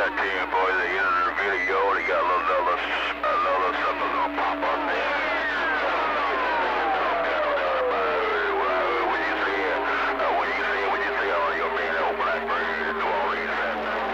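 CB radio receiving on a busy channel: garbled, warbling voices and heterodyne whistles over steady carrier tones. About five seconds in, a whistle slides steadily down in pitch for several seconds and then settles into a low steady tone.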